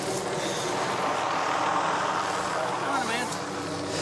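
Police helicopter overhead: a steady drone of engine and rotor noise, with voices near the end.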